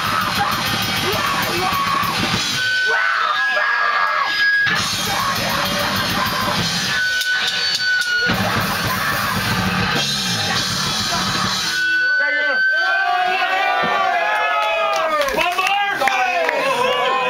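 Live rock band with drums playing loudly, stopping short twice for brief breaks; from about three-quarters of the way in, a crowd of voices sings and shouts over a thinner backing.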